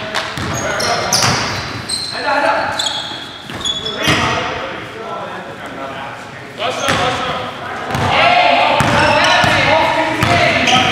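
A basketball being dribbled on a hardwood gym floor during play, with short high squeaks of sneakers on the court and players' voices, all echoing in the hall. The voices grow louder near the end.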